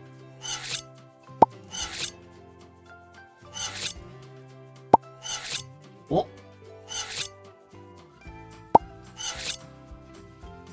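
A kitchen knife slicing crab sticks against a glass cutting board in about six short scraping strokes, over background music. Three sharp, loud pops stand out above them.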